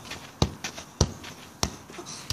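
A football being kicked up repeatedly, keepy-up style: three sharp thuds of foot on ball, a little over half a second apart.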